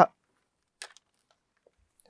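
Near silence in a foam-lined booth, broken by one faint, short rustle a little under a second in, as a pair of headphones is picked up off a table.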